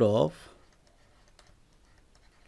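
Faint, sparse ticks of a stylus tapping and sliding on a digital pen tablet as a word is handwritten.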